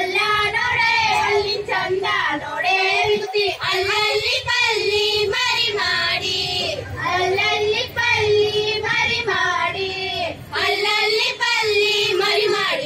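Women singing a Kannada folk song in high voices through the stage microphones, in short melodic phrases with brief pauses between them.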